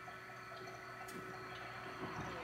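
Faint handling sounds from an adhesive rhinestone template sheet being slowly peeled, with a single small click about a second in, over a steady low hum.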